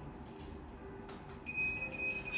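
A steady, high-pitched electronic beep starts about one and a half seconds in and holds.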